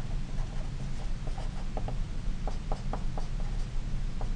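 Felt-tip marker writing on paper, a quick series of short scratchy strokes in two bursts as letters are formed, over a steady low hum.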